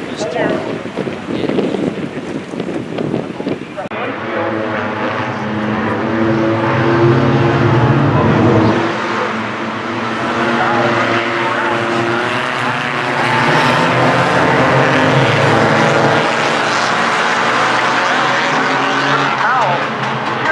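Four-cylinder compact race cars running at high revs around a short oval, engine note swelling as the pack comes by about four seconds in, loudest around six to nine seconds and again from about twelve to eighteen seconds.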